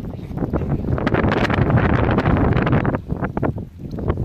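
Wind buffeting the phone's microphone, a rumbling rush that swells to its loudest from about one to three seconds in, then eases.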